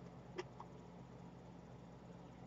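Near silence: room tone with a faint steady low hum and one faint click about half a second in.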